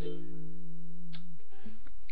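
The last ukulele chord of the song ringing on after the singing stops, dying away about a second and a half in.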